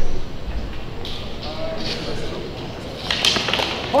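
Longswords clashing in a quick exchange of sharp strikes and hits on armour, starting about three seconds in, with a spectator's 'oh!' right at the end.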